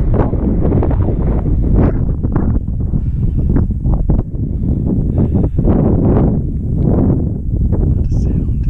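Wind blowing hard across the camera's microphone, a loud, low buffeting that surges and eases in gusts about once a second.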